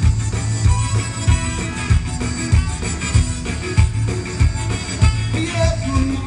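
Live zydeco band playing an instrumental passage, a saxophone to the fore over a steady drum beat.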